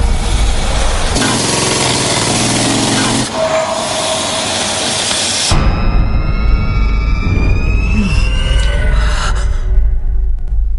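Film trailer soundtrack: music under a loud, dense noise that cuts off suddenly about five and a half seconds in, leaving music with slowly sliding high tones over a low rumble.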